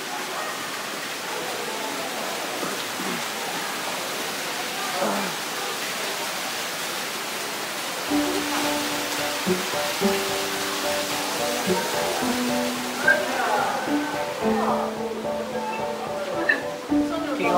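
Steady rush of falling water from an artificial waterfall. About halfway through, music with long held notes that step from one pitch to the next comes in over the water.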